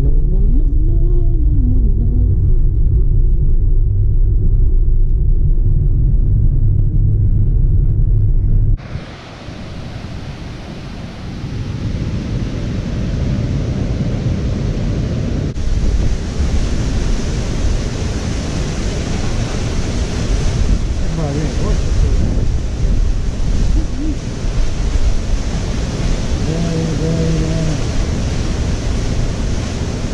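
Steady low road rumble inside a moving car's cabin. About nine seconds in it cuts abruptly to the steady rushing hiss of a waterfall, with faint voices in the background.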